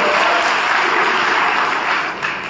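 Audience applauding: steady clapping that fills the pause in a speech and eases off near the end.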